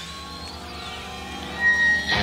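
Live 1970s hard-rock band in a quieter instrumental gap between sung lines: sustained instrument notes with slow sliding pitches, and a bright, steady high tone near the end.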